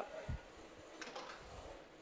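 Faint handling noises from a metal mixing bowl and sieve being put down at a stainless steel sink: a soft low thump, then a few light clicks about a second in.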